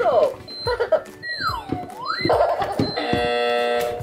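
Electronic sounds from a Hawk Moth head brain-surgery game toy: a swooping tone that falls and rises again, then a steady buzzing tone from about three seconds in signalling that the timer has run out. Plastic clicks and rustling from a hand rummaging inside the head run underneath.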